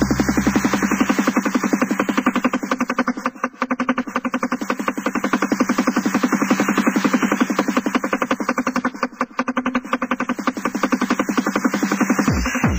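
Early-nineties techno playing in a DJ mix. The deep bass and kick drop out about a second in, leaving a fast, pulsing synth pattern in a breakdown.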